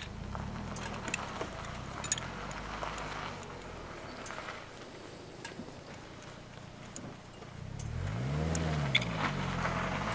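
Yamaha XS650 parallel-twin engine running at a low idle, then revved up and back down once about eight seconds in. Light metallic clicks and taps from hand work on the engine sound over it.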